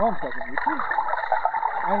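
People talking, sounding muffled.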